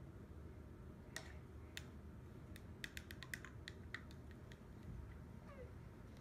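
Light clicks and taps of a paintbrush against a plastic water cup and a paper-plate palette, a few at first and then a quick cluster in the middle. Near the end comes a faint, short falling squeak.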